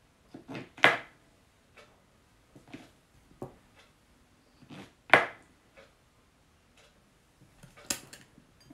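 Sharp clicks and light knocks of a small kitchen knife and olives being handled while olives are halved and set on toasts on a plate mat. The two loudest clicks come about a second in and about five seconds in.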